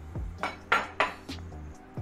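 Metal forks and knives clinking and scraping on ceramic plates as waffle pieces are cut: several sharp clinks in the middle second.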